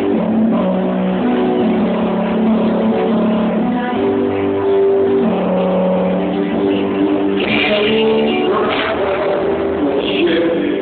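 Live band playing an instrumental passage led by guitar, sustained chords changing every second or two, with the sound brightening about three-quarters of the way through. Recorded through a camera microphone, so it sounds loud and dull-topped.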